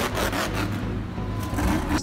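Monster truck's supercharged V8 running hard under a wheelie in an arena, a continuous rough, noisy sound over a steady low drone.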